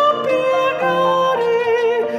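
A woman singing a hymn in Portuguese with piano accompaniment, holding long notes with vibrato.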